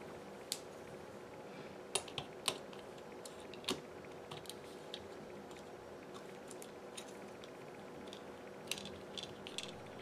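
Small, sharp, irregular clicks and taps of a plastic spudger prying at a smartphone's frame and mainboard connectors, about ten in all, over a faint steady hum.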